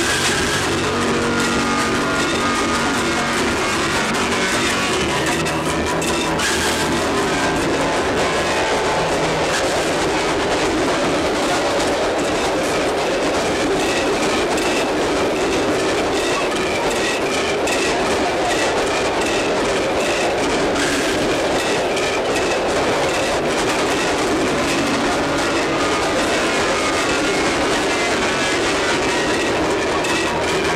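A train running steadily, its carriages rattling along the rails, with film score music whose held notes are clearest in the first several seconds.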